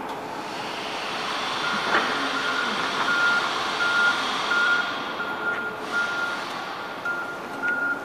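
Electric forklift's reversing alarm beeping at an even pace, starting about two seconds in, over a steady hiss of the truck moving across the concrete floor.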